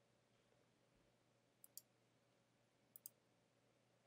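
Two pairs of quick computer mouse clicks, one pair about one and a half seconds in and the other about three seconds in, over near silence.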